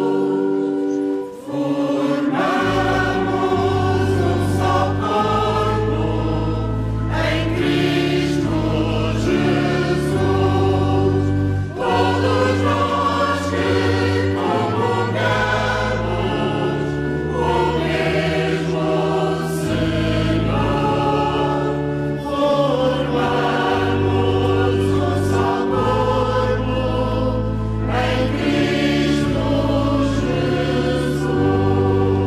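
Church choir singing a communion hymn in a reverberant church, over long held low accompanying notes that change every few seconds, with a brief pause between phrases about a second in.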